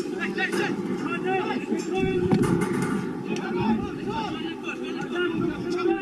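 Indistinct shouting and calls from football players across the pitch, over a steady rumble of wind on the microphone. A single thud comes about two seconds in.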